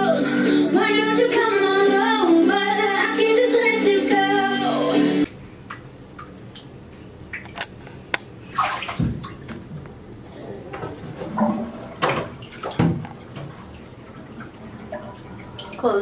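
Background pop music with a woman singing, cut off abruptly about five seconds in. After that, the quiet sound of a baby playing in shallow bathwater in a bathtub: a low hiss of water with a few sharp slaps and splashes.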